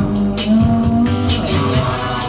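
Live band music with guitar and a steady beat, percussion hits landing about once a second.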